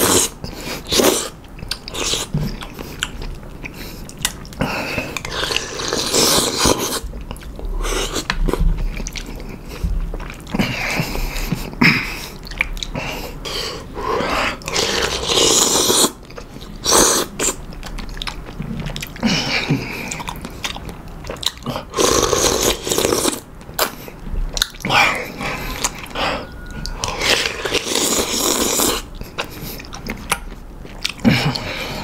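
Close-up eating sounds of noodle soup: loud slurps of noodles and broth from a spoon every few seconds, with chewing and small clicks in between.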